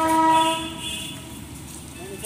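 A horn sounds one long, steady note that fades out about a second in.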